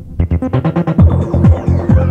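Electronic dance music from a club DJ set. A brief drop ends about a quarter second in with a fast run of drum hits, then the kick drum comes back in at about two beats a second, with a falling synth sweep on top near the end.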